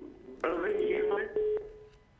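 A caller's voice coming in over a telephone line, thin and narrow like phone audio, with a steady tone held underneath it for about a second.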